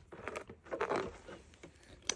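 Faint rustling with a few light scrapes and taps as a plastic laundry basket and the clothes in it are pulled at and tipped over on carpet.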